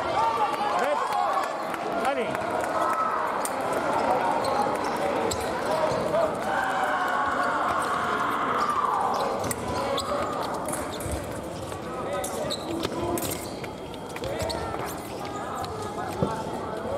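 Busy fencing hall: fencers' footwork on the piste, with many voices from around the hall and scattered sharp clicks.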